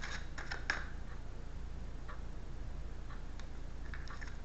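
A deck of tarot cards being shuffled by hand: a quick run of card clicks in the first second, then a few fainter clicks, over a steady low hum.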